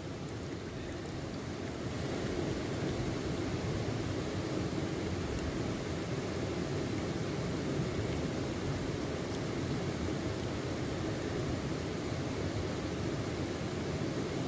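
Shallow river water rushing and sloshing around a plastic gold pan held tilted in the current, a steady sound, as the pan is washed down to clear off the lighter gravel and leave the heavy concentrate.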